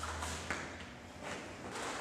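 Taekwondo form movements: a few quick swishes of the cotton uniform as the arms strike, with a sharp tap of a bare foot on the mat about half a second in.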